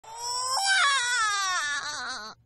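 Newborn baby crying in a cartoon: one long wail that steps up in pitch about half a second in and then slides steadily down.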